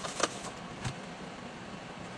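Handheld bar heat sealer pressed closed across cellophane wrapping: a sharp click, then a duller knock about two-thirds of a second later, over a steady low hum.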